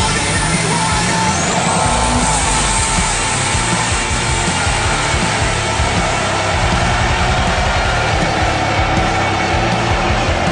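Music playing over a diesel pickup's engine running at full throttle as the truck launches down a drag strip.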